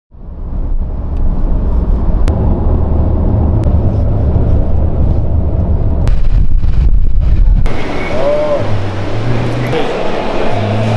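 Car cabin road noise from a moving taxi: a steady low rumble of tyres and engine at highway speed, with a few faint clicks. It cuts off suddenly near the end, giving way to a different, brighter background.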